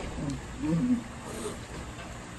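A wordless human vocal sound: a low voice wavering up and down for under a second, near the start, with no words in it.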